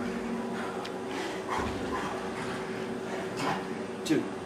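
A man's hard breathing and short groans of exertion while he rests briefly between push-ups, over a steady low hum.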